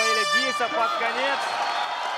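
Arena horn sounding for about a second, marking the end of the final round of the fight.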